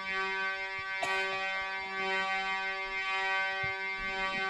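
Harmonium holding a steady chord, with a brief fresh attack about a second in.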